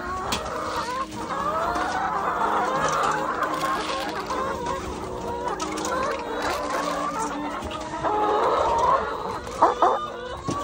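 A flock of brown laying hens clucking and calling together at feeding time, many voices overlapping, swelling louder about eight seconds in. A couple of short sharp knocks come just before the end.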